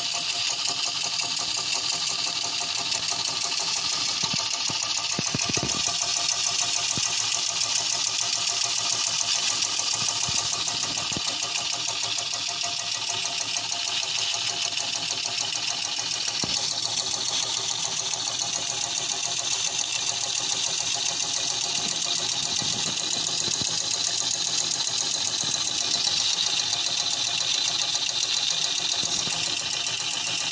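Small vertical model steam engine with a rotary valve running on live steam. A fast, even patter of exhaust beats sits under a steady high hiss of steam.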